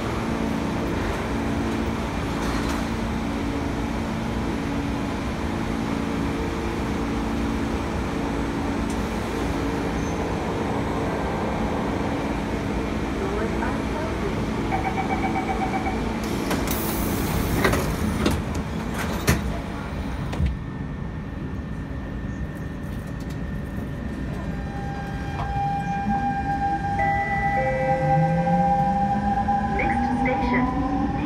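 C651 electric train standing at a station with a steady multi-pitch equipment hum, then a burst of noise and a few knocks as the doors close, after which the sound goes muffled. Near the end the traction motors start with a rising whine as the train pulls away.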